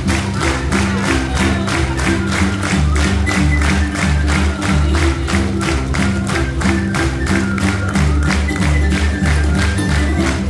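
Georgian folk dance music with a fast, steady drumbeat under sustained bass notes and a melody line.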